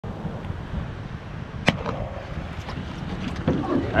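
Wind buffeting a boat-mounted camera microphone over shallow surf washing around a surf boat, with one sharp knock about a second and a half in.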